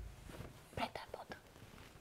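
Faint, whispered voices: a few short, quiet utterances about a second in, well below normal talking level.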